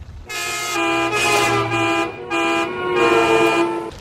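Car horn honking three times: one long blast of about a second and a half, then two shorter ones.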